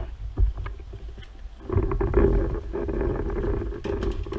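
Pressure washer starting about one and a half seconds in and then running steadily, a constant motor hum under the hiss of the water jet. It is preceded by a few light knocks from handling the gun.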